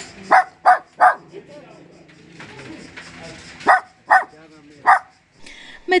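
A small black-and-tan puppy yapping in short, sharp yaps. There are three quick yaps about a third of a second apart in the first second, then three more from just under four seconds in, over a murmur of background chatter.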